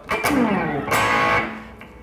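Electric guitar, a Fender Stratocaster, strummed on an A chord: a short strum at the start, then a fuller strum about a second in that rings out and fades.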